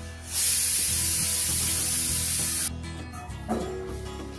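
Pressure cooker whistle releasing steam: a loud steady hiss that lasts about two and a half seconds and cuts off suddenly, over background music.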